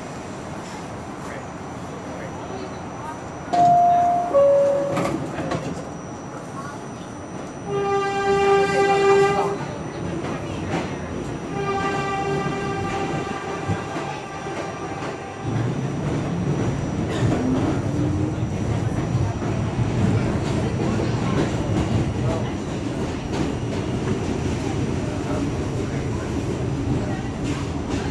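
A New York subway door chime, two descending tones, about four seconds in, then a subway train's horn blowing twice, a blast of under two seconds and a longer one a few seconds later. From about fifteen seconds in, an R68A subway car pulls out of the station, its motors and wheels rumbling as it gathers speed.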